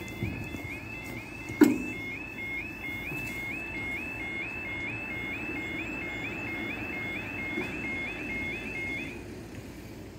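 UK level crossing audible warning alarm sounding while the barriers lower: a repeating two-tone warble about twice a second, cutting off about nine seconds in once the barriers are down. A single loud knock is heard about a second and a half in, over a steady low rumble.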